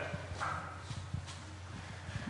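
Faint scattered low knocks and shuffling, the handling and movement noise of people in a quiet lecture hall, with a brief faint murmur about half a second in.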